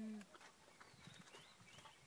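Near silence after a brief held voice sound at the very start, with faint soft crackles and a few faint high chirps.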